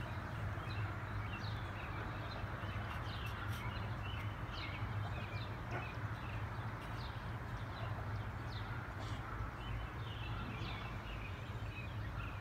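Outdoor ambience: small birds chirping over and over in short, falling notes, over a steady low hum.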